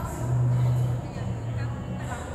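A low, steady motor hum that swells twice, each time for under a second, with faint voices behind it.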